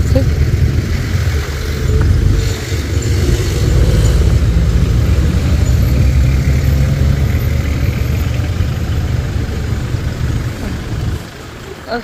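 Street traffic: a low, steady rumble of vehicle engines from passing and nearby cars and trucks, which falls away about eleven seconds in.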